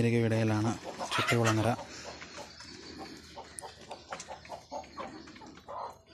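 A man's voice for the first couple of seconds. Then country hens cluck softly in a quick run, a few short clucks a second.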